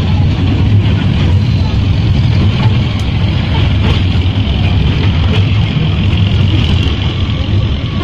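Steady low rumble of a small themed tourist train running, heard from on board one of its open carriages, with a steady hiss higher up.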